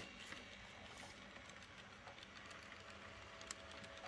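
Faint running of a model train: light, irregular clicks of its wheels on the track over a faint steady hum, one sharper click near the end.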